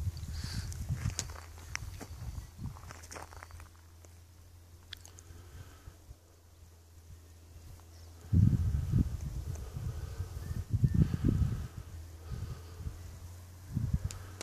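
Wind buffeting the microphone in irregular low gusts, strongest from about eight to eleven seconds in, over a faint steady low hum.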